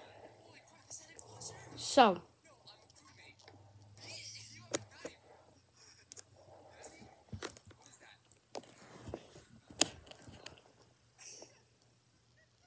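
Close-up chewing and mouth sounds from eating a fast-food burger: soft irregular smacking with scattered sharp clicks. One short spoken word comes about two seconds in.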